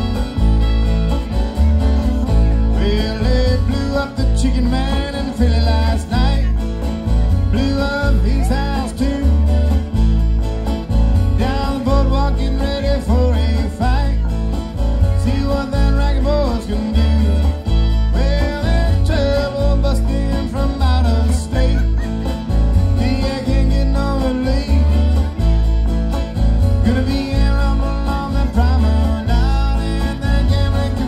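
Bluegrass-style string band playing live: bowed fiddle, two strummed acoustic guitars and a plucked upright bass keeping a steady beat.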